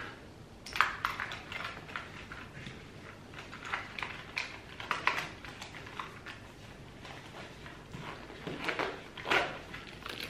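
Small items being handled and packed into a bag on a table: an irregular run of light clicks, knocks and rustles, the loudest about a second in and near the end.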